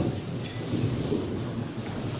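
Audience applauding in a large hall, a steady even clatter of many hands.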